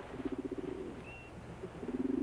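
A low, rapidly fluttering animal call, heard twice, with a short high chirp about a second in.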